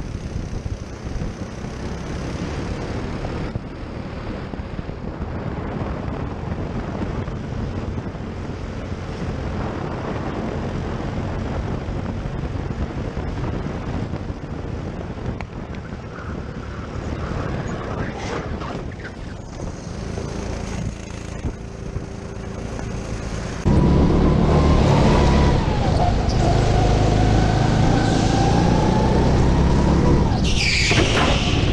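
Go-kart engine running at speed, heard from an onboard camera and mixed with wind noise on the microphone. About four-fifths of the way through, the sound cuts to a louder kart engine whose pitch rises and falls with the throttle.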